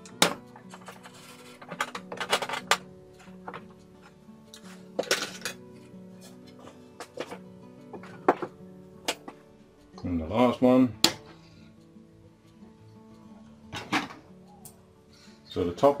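Quick-release bar clamp being loosened and taken off glued wooden helix rings, with scattered sharp clicks and knocks of plastic and wood over steady background music.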